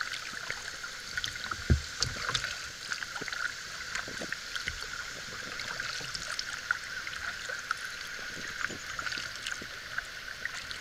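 Water sounds of a cedar canoe being paddled: small splashes and drips from the paddle over a steady hiss of water, with a dull knock a little under two seconds in.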